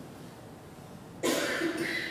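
After about a second of quiet room tone, a man exclaims one word and breaks into a short, breathy laugh.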